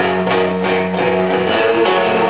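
Live band playing an instrumental passage: strummed guitar chords on an even beat, about three strokes a second, over a held bass note.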